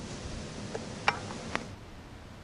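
Four light, sharp taps, the second the loudest, over a faint background hiss.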